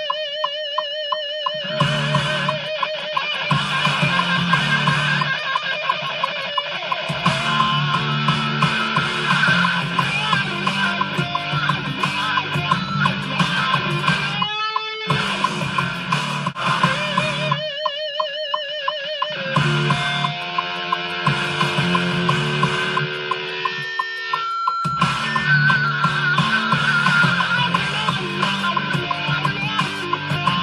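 Rock music with a steady beat and a distorted electric guitar. The band cuts out briefly a few times, leaving single held guitar notes with wide vibrato.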